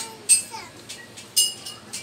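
Small metal assembly hardware clinking twice, about a third of a second in and again about a second and a half in, each with a brief ring, as parts of a gaming chair are handled during assembly.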